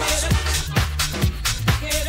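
House-style club dance music from a DJ mix, with a steady kick drum a little over two beats a second, each beat dropping in pitch, over a held bassline.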